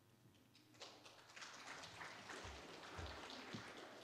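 Faint, even rustling noise with two soft low thumps about two and a half and three seconds in.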